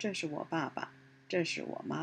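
Speech only: a woman speaking in two short phrases with a brief pause between, over a faint steady hum.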